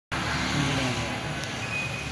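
People's voices talking over a steady outdoor noise, with a thin high whistle-like tone coming in near the end.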